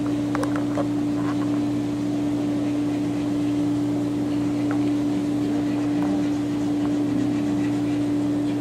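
Steady motor hum at one constant pitch over a wash of moving water, typical of a hydrotherapy pool's pump running. A few faint splashes or clicks come about half a second in.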